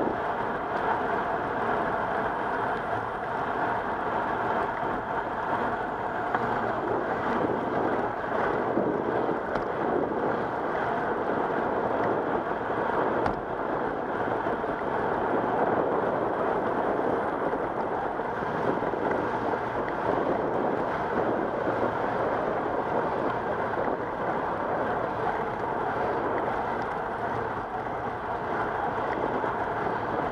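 Steady rushing noise of a moving bicycle ride: wind over the camera's microphone mixed with tyres rolling on a paved path, even in level throughout.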